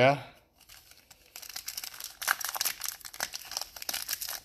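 Foil trading-card pack wrappers crinkling and being torn open, a dense run of quick crackles starting about a second and a half in.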